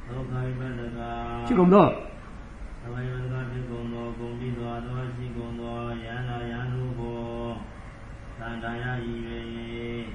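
A Burmese Buddhist monk's voice intoning a text in long, held notes at a low pitch, phrase after phrase, with a louder sliding syllable about a second and a half in and a short pause near the end.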